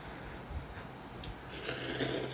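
A person slurping instant noodles: a short hissing slurp starts about one and a half seconds in.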